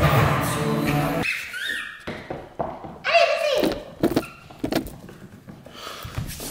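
Background music that cuts off about a second in, then a small dog playing with plush toys on a hardwood floor: scattered taps and thuds of claws and toys on the boards, with a few short high squeaks.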